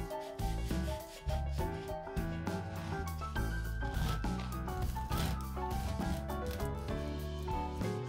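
A knife sawing back and forth through the crust and crumb of a white sandwich loaf, rasping strokes heard mostly in the middle, over background music.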